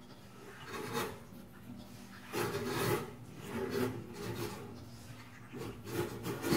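Irregular rubbing and scraping noises, about five short strokes of different lengths over a low steady hum.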